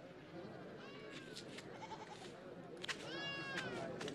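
Faint animal bleats, one call about a second in and a clearer one falling in pitch around three seconds, over a low murmur of voices.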